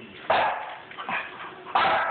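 Small Shih Tzu dog barking up at its owner for its dinner: two loud barks, about half a second in and near the end, with a softer bark between them.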